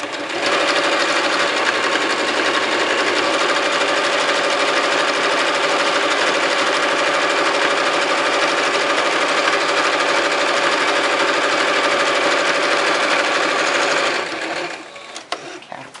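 Electric sewing machine running at a steady speed, stitching a folded hem along a fabric panel. It runs without a break for about fourteen seconds, then stops.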